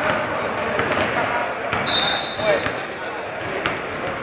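A basketball bouncing on a sports-hall floor with scattered knocks, amid voices echoing in the hall. A high steady tone lasts about a second and a half, starting about two seconds in.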